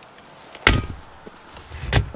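Two sharp knocks, about a second and a quarter apart. The second comes after a brief scraping build-up.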